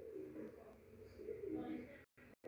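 Faint, low cooing calls of a bird in the background.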